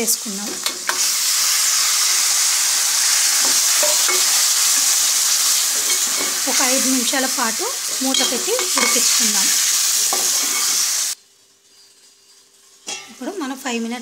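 Chicken pieces and fried onions sizzling loudly in hot oil in a steel pot, stirred with a metal slotted spoon. The sizzle cuts off abruptly about eleven seconds in, leaving a near-silent gap.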